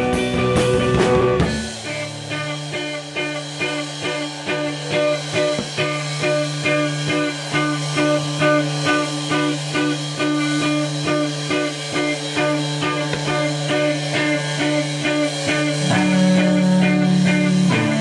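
Live rock band playing, electric guitar to the fore with drums. A loud, dense passage gives way about a second and a half in to a quieter, evenly repeating guitar figure over a held low note, which grows louder again near the end.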